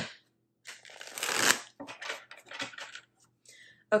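A deck of tarot cards being riffle-shuffled by hand: one long riffle of cards a little under a second in, then several shorter rustles as the halves are pushed back together.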